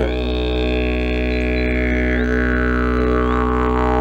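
Wooden Horizonde SI 39 didgeridoo played as a steady low drone that starts abruptly, rich in overtones, with a bright high overtone slowly sliding down in pitch.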